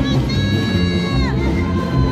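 Live polka music from a small stage band, with a high-pitched shout held for about a second that drops away at its end, like a festive yell over the dance.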